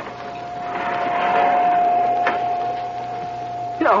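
Radio-drama sound effect of a heavy door being opened: a mechanical grinding noise swells and fades, with a sharp click about two seconds in, over a steady high hum that starts at the outset.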